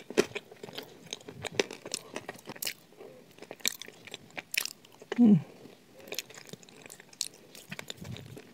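Close-up crunching and chewing of a crumbly brown food, with many irregular crisp crackles and wet mouth clicks. A short, closed-mouth "mmm" of enjoyment falls in pitch about five seconds in.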